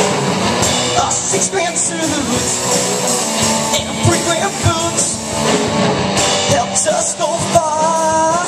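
A live rock band playing: electric guitars, bass guitar and a drum kit.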